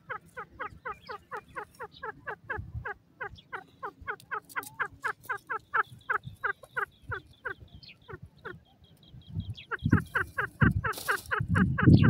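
Grey francolin calling in a rapid series of short, downward-sliding notes, about five a second, pausing briefly about two-thirds in. Near the end a louder, rougher burst of sound breaks in.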